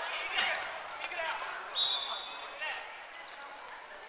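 Kin-ball players shouting and calling across a reverberant gymnasium, with sneakers squeaking and feet thudding on the wooden court. A short high squeal stands out about two seconds in.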